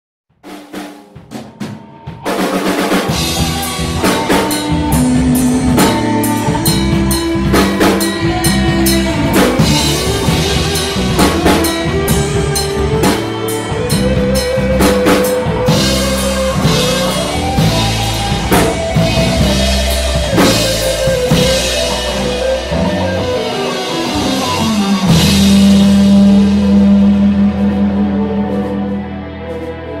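Rock band playing an instrumental intro live: drum kit, bass and a lead melody that climbs and falls over a steady beat. It starts with a few scattered hits, the full band comes in about two seconds in, and a long held chord rings near the end.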